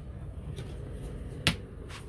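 Handling noise with one sharp click about a second and a half in, and a couple of faint ticks around it.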